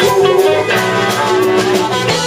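Live rock band playing an instrumental passage: electric guitars over a drum kit.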